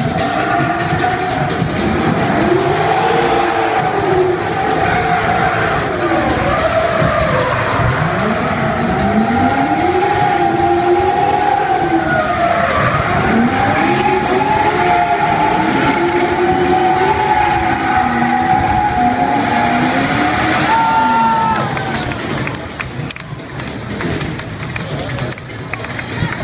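Stunt cars' engines revving up and down again and again while their tyres squeal in a long, wavering screech, with music underneath; the noise eases off about 22 seconds in.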